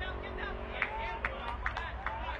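Faint, indistinct voices in the background, with a few short clicks and a steady low hum.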